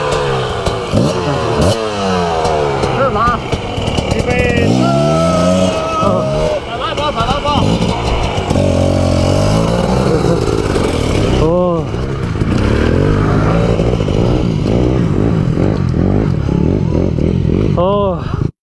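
Dirt bike engine revved up and down again and again as the bike is forced through deep mud, its rear wheel fighting for grip; the revs settle into a steadier pull in the second half.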